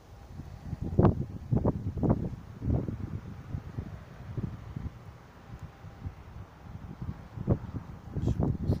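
Wind buffeting the microphone in irregular low gusts, heaviest about one to three seconds in and again near the end.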